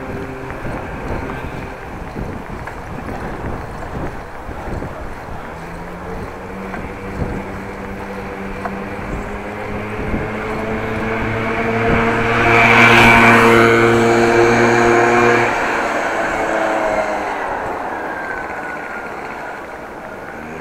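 Wind and riding noise from a moving bicycle, while a motor vehicle's engine hum builds from about a third of the way in, is loudest as it passes about two-thirds of the way in, and stops soon after.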